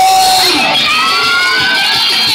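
Loud shouting and whooping voices, with one long call rising in pitch from about half a second in, over a live acoustic-guitar band.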